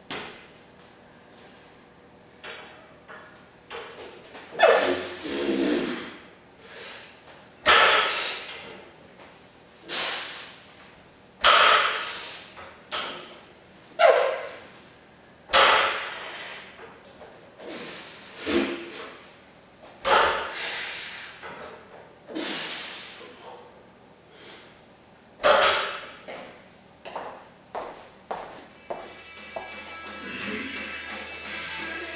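A 125 kg barbell with bumper plates thudding down onto a rubber floor mat rep after rep through a set of five deadlifts, a sharp thud every few seconds from about four seconds in, each followed by a loud exhale.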